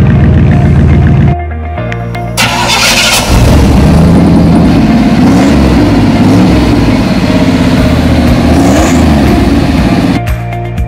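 A pickup truck engine starts with a loud burst about two seconds in, then runs and revs unevenly, mixed with background music.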